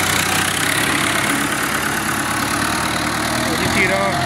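New Holland 640 tractor's diesel engine running steadily under load as it pulls a potato digger through the soil.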